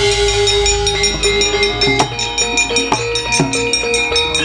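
Javanese gamelan accompaniment for a wayang kulit shadow-puppet play bursting in loudly: a deep low boom at the onset under ringing, sustained metallophone tones, with sharp knocks several times a second throughout.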